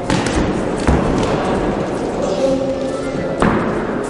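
Gloved punches landing in a boxing exchange: a few sharp thuds, about a second in and again about three and a half seconds in, over voices and shouts in a large hall.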